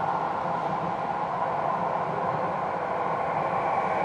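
Jakarta MRT electric train pulling into an elevated station platform: a steady, even running noise with no sudden sounds.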